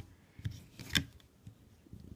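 Faint clicks and rubbing of latex rubber bands being eased off the plastic pegs of a Rainbow Loom, with one sharper click about a second in.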